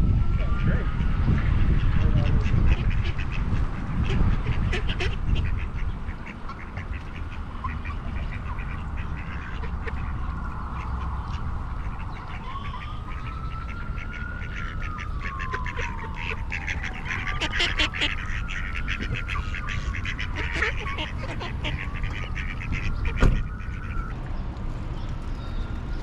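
A flock of mallard ducks quacking, many short calls that grow busier in the second half. Over them a distant siren wails slowly up and down, and wind rumbles on the microphone during the first few seconds.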